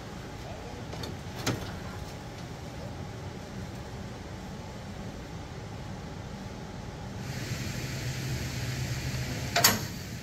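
Steady outdoor background hum with a light knock about a second and a half in and a sharper, louder knock near the end, as a wooden hall tree is handled and set down on a utility trailer.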